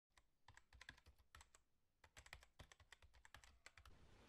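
Faint rapid clicking in two runs of irregular taps, like typing on a keyboard.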